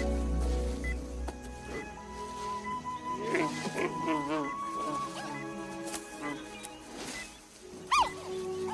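Film score music, with a giant panda's wavering pitched call between about three and four and a half seconds in, and a short, sharp rising cry right at the end.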